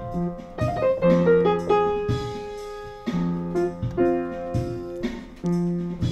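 Upright acoustic piano playing an instrumental blues passage: chords and bass notes struck roughly once a second, each left to ring and fade before the next.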